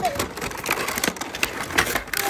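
Gift packaging being torn and pulled open by hand: a continuous crinkling and crackling of plastic wrap and cardboard, dense with small clicks.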